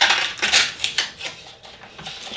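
Blue painter's tape being pulled off its roll in a few short, rasping strips during the first second or so, then pressed onto a glass build plate.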